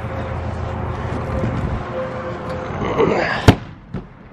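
An aluminum stock trailer's rear door being unlatched and swung open, with rustling handling noise, then one sharp metal bang about three and a half seconds in.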